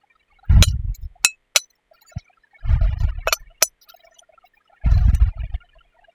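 Metal spoon clinking and scraping against a glass mixing bowl while scooping a herb and spice mixture, with five sharp clinks. Three dull thumps come about two seconds apart.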